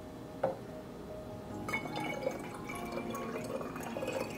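Herbal infusion poured in a thin stream from a stoneware pot's spout through a small copper funnel into a bottle: a trickling, dripping fill that starts about two seconds in. A single light knock about half a second in.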